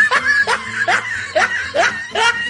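A person snickering: a run of about five short laughs, each rising in pitch, some two and a half a second.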